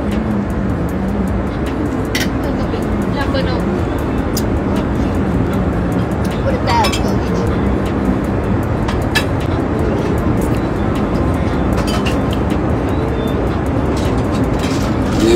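Steady cabin drone of a private jet, with a low wavering hum underneath and a few light clicks scattered through it.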